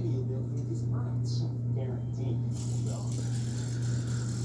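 A steady low hum with muffled television talk underneath, and a few faint short crunches from a baby sulcata tortoise biting leafy greens.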